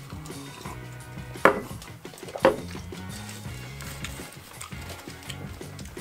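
Background music with a steady bass line. About one and a half seconds in come two sharp knocks, a second apart, the loudest sounds here.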